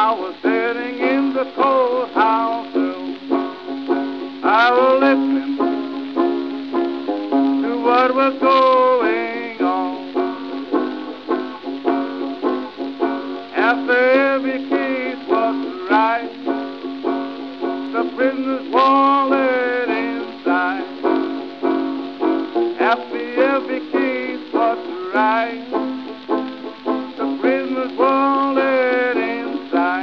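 Country blues: a six-string banjo picking a steady accompaniment with a held low note, under a male voice singing with bent, sliding notes. The sound is narrow and thin, as on an old 78 rpm record.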